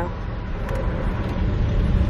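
Steady road noise inside a moving car's cabin: a low rumble of tyres and engine at cruising speed.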